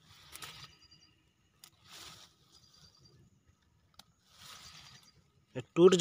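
Faint rustling of grass and leaves in three short spells as a hand handles a freshly picked wild mushroom and pulls at its long root, with one light click about four seconds in.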